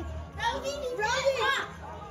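A young girl's high-pitched voice, starting about half a second in and lasting about a second, with no words the recogniser could make out.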